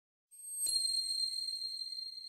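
Logo-intro chime: after a short rising swell, a single bright ding is struck just over half a second in and rings on as high, steady tones that slowly fade.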